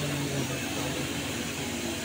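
A steady mechanical hum over a continuous hiss, like a fan or cooling unit running in the room.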